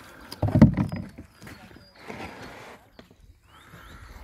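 Black plastic fish tubs handled on wooden jetty planks: one heavy thump about half a second in, then lighter knocks, with water splashing as freshly released live carp stir the surface.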